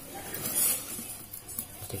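Fingernails picking and scraping at the edge of a plastic polarizer film as it is peeled off an LCD panel's glass, with a brief scratchy rustle about half a second in.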